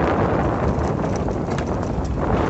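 Wind buffeting the microphone with a steady rumble, and a few light clicks or knocks in the second half.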